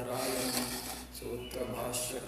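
Rasping rub of cloth brushing against a clip-on microphone, loudest over the first second, over a man's voice speaking.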